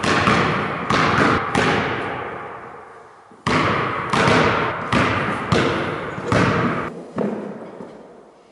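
A basketball dribbled on a wooden gym floor: sharp bounces roughly every half second, with a pause of about two seconds after the first three, about nine bounces in all. Each bounce rings on in the big hall's echo.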